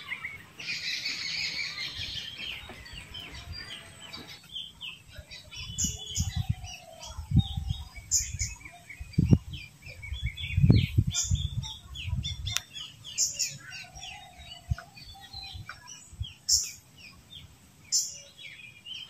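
Birds chirping: a dense high chatter for the first few seconds, then scattered short, high chirps. A run of low thumps comes in the middle.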